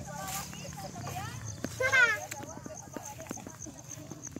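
Children's voices and shouts, with one loud, high-pitched shout about two seconds in, over the low steady running of a Sakai SW500 tandem road roller's engine.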